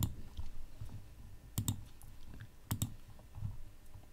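Two pairs of quick clicks from a computer mouse at a desk, the first pair about one and a half seconds in and the second just under three seconds in. They sit over faint room hiss.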